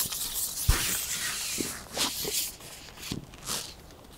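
Match fishing pole being handled and broken down: a hissing slide with a low thump about a second in, then a series of light knocks and clicks as the pole sections are pulled apart.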